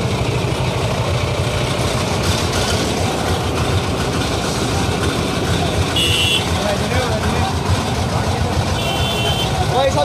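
Traffic-jam noise of truck and car engines running close by, a steady low rumble. Two short high beeps sound, about six seconds in and again near the end.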